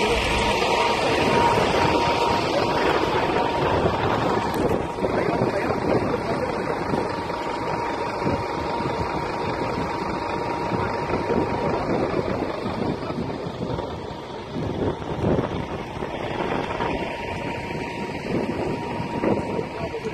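Wind buffeting a phone microphone over the noise of running vehicles and indistinct voices, with a steady high tone for about the first twelve seconds.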